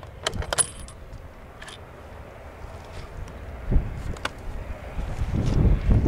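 A few light metallic clicks and a short jingle about half a second in, followed by sparser faint clicks and a low rumble that builds near the end.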